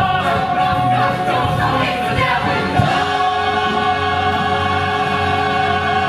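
Musical theatre ensemble singing together with instrumental accompaniment, closing a number: the voices move for the first few seconds, then settle about halfway through into a held final chord.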